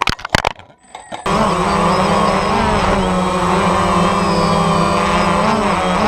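DJI Phantom quadcopter's motors and propellers buzzing steadily, heard from the camera mounted on it. Near the start the buzz breaks up into a few sharp knocks and drops out, then comes back and holds steady from about a second in.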